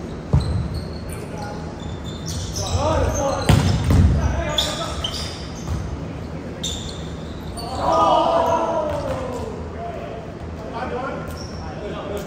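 Indoor volleyball rally: the ball is struck and hits the floor with sharp thumps that echo around the hall, among players' shouts and short high squeaks.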